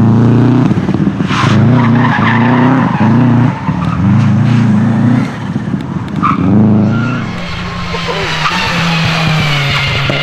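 Subaru Impreza rally car's flat-four engine revving hard in short bursts, broken by gear changes and lifts off the throttle as it takes a tight bend, with a few sharp cracks. From about seven seconds in, a second rally car runs at lower, steadier revs with its tyres squealing through a hairpin.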